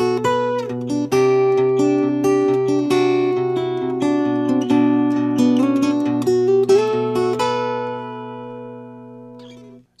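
Steel-string acoustic guitar with a capo, played Travis-style with a flatpick on the bass strings and the middle and ring fingers plucking melody notes above a steady alternating bass. After about seven seconds the picking stops and a last chord rings and fades.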